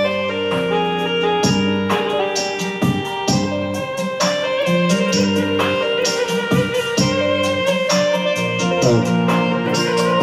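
Electric saz, keyboard and fretless bass starting to jam together on Middle Eastern music, with a run of plucked notes over held keyboard and bass tones; the parts sound like a clunky conversation, not yet fitting together.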